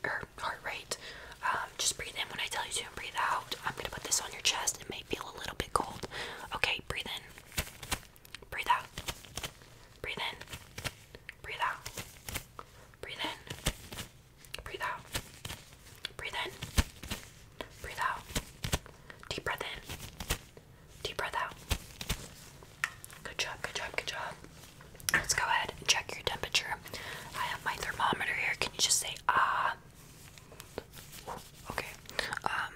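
A woman whispering, soft unvoiced speech that comes in short phrases with pauses, along with a few small clicks and rustles.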